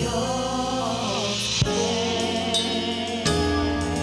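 A gospel choir singing with keyboard accompaniment and a few drum hits.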